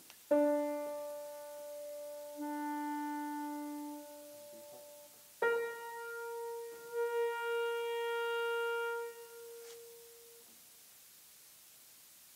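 Grand piano playing two short phrases of slow, held notes. Each phrase opens with a firm struck attack and rings on before dying away near the end.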